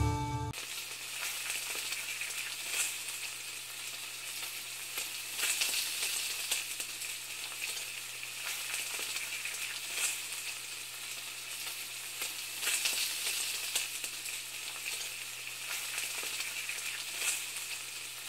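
Steady crackling sizzle like food frying, with scattered pops and a low steady hum underneath. Music cuts off just after the start.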